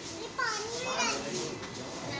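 Children's voices: high-pitched excited calls and chatter, loudest from about half a second to a second in.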